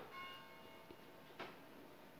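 Faint clicks of a door's latch and handle as a wooden door with a glass panel is pulled shut: one click at the start with a short metallic ring after it, and a second click about a second and a half later.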